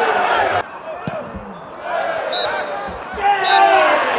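Football crowd noise that cuts off abruptly about half a second in, leaving quieter pitch-side sound: players' shouts, a few dull ball thuds and two short high peeps. The crowd and voices swell again near the end.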